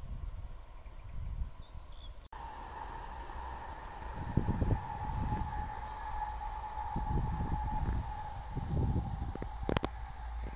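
A steady, high-pitched mechanical whine starts about two seconds in, after a cut, and holds one pitch over irregular low rustling.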